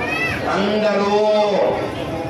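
A man's voice amplified through a microphone, chanting in long held notes. At the very start there is a brief high cry that rises and then falls.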